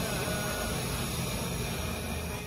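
Portable butane cartridge gas stove burning at a high flame: a steady, loud rush of gas through the burner.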